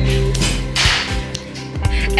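Background music with sustained notes, and one short hissing swish about a second in.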